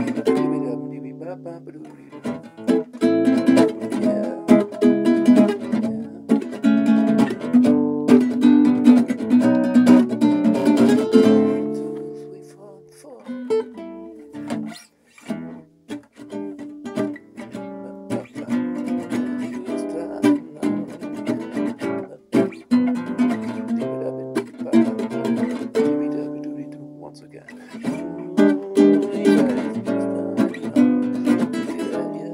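Nylon-string classical guitar played fingerstyle, a blues tune of plucked bass notes and chords. It drops to a quiet passage about halfway through, then picks up again.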